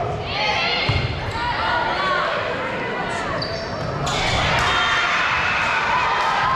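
Volleyball rally in an echoing gym: sharp ball contacts amid players calling and spectators shouting. About four seconds in the crowd noise swells, typical of the point ending.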